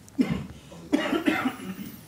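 A man coughing twice, a short sharp cough followed by a longer one.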